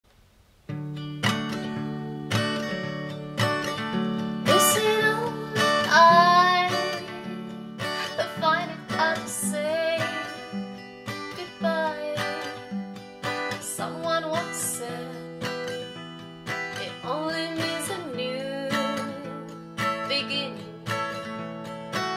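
Acoustic guitar playing a song, coming in under a second in, with a woman's voice singing over it.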